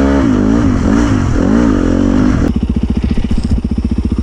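Dirt bike engine rising and falling in pitch with the throttle, then, after a sudden cut about two and a half seconds in, running at low steady revs with distinct, evenly spaced firing pulses.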